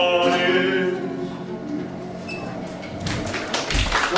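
The end of a song: a man's held final sung note over ukulele and acoustic guitar dies away, and about three seconds in audience applause begins, with a low thump just before the end.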